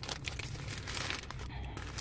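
Paper burger wrapper crinkling and rustling in a rapid string of small crackles as it is unwrapped by hand.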